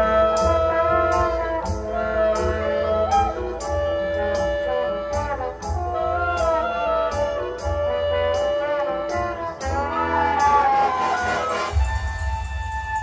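High school marching band playing its field show: brass holding sustained chords over regular percussion hits, building in a rising swell near the end.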